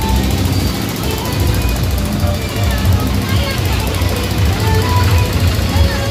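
Loud, distorted music with heavy pulsing bass from a procession sound system, with voices mixed in.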